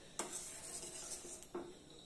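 Metal spoon stirring soup in a stainless steel pan, with two light clinks of the spoon against the pan, one just after the start and one about a second and a half in.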